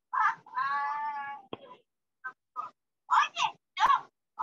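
Voices over a video call: one long, drawn-out high call held for about a second near the start, a sharp click around the middle, and short bursts of speech near the end.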